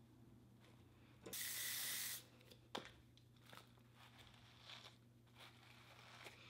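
Aerosol hairspray can sprayed in one burst of hiss just under a second long, about a second in, followed by a short click.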